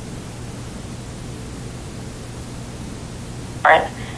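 A steady, even hiss with a faint low hum underneath, and a spoken word starting near the end.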